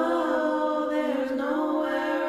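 Vocal music: voices singing long held notes that glide between pitches.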